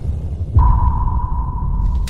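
Logo-reveal sound effect: a deep low hit, then about half a second in another low hit with a single steady, high, sonar-like tone that holds.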